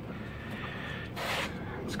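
Clear plastic wrapping around a motorcycle sissy bar's bracket rustling briefly as it is handled, a short crinkle a little past the middle of an otherwise quiet stretch.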